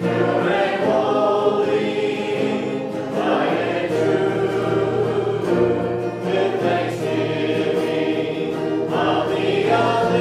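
Congregation singing a hymn together, accompanied by acoustic guitar and keyboard.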